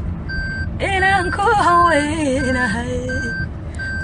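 A voice singing over electronic backing music, starting about a second in. Short high beep-like tones repeat about every two-thirds of a second.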